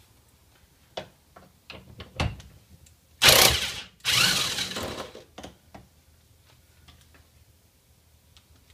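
Corded electric impact wrench undoing a steering wheel centre nut: two loud bursts of hammering, the first under a second and the second about a second, with clicks and knocks of the socket being fitted on the nut before and handled after.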